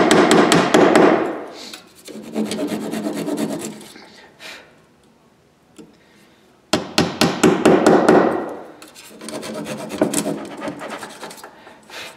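Rapid light tapping in several bursts, with a quiet gap in the middle, as an eighth-inch dowel pin is driven through the holes of an aluminium fret-slotting template into a guitar neck.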